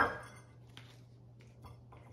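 Kitchenware clinking: one sharp, ringing clink of a steel measuring cup and spoon against a glass mixing bowl or the counter right at the start, dying away within about half a second. A brief soft rustle follows near the middle, with a couple of light taps later.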